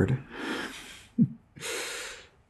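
A man breathing audibly between sentences: two soft breaths, with a brief voiced sound between them about a second in.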